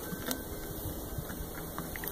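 Treadmill motor running steadily with a low hum, under a dog walking on the belt, with a few faint clicks along the way.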